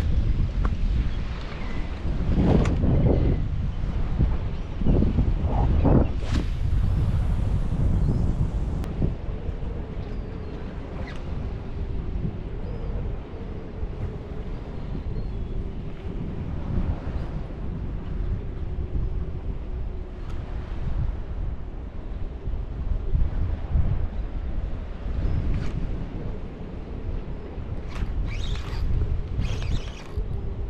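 Wind buffeting the microphone over choppy water, loudest in gusts during the first several seconds, then settling to a steady rush. A faint steady hum runs underneath from about nine seconds in.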